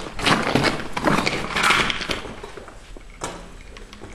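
Scuffing and rustling noises from footsteps and handling as someone moves with the camera through a gutted building. There are a few rough, noisy scrapes, the loudest about a second and a half in.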